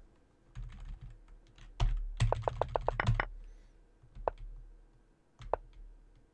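Computer keyboard keys being pressed: a few single clicks, then a fast run of about ten keystrokes in a second, then a couple more single presses, as moves are stepped through on a chess board on screen.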